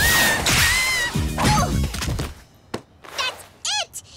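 Cartoon soundtrack: a noisy burst with a high whistling tone in the first second, then a low rumbling thud. After a short lull, brief voiced yelps come near the end.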